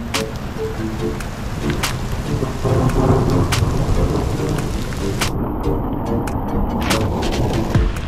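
Heavy rain falling on the camera, with sharp drop hits on the microphone and a steady low rumble underneath. A few soft music notes play over it in the first three seconds.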